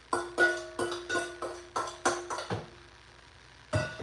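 A quick run of about eight plucked-sounding notes over two and a half seconds, like a short electronic jingle or ringtone, followed by a knock near the end.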